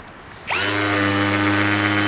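Cordless hammer drill in hammer mode and low gear, with a dull flat bit pressed against a concrete form, used as a makeshift concrete vibrator. It starts about half a second in, comes up to speed quickly and runs at a steady pitch, shaking air bubbles out of the wet concrete so the cap does not come out honeycombed.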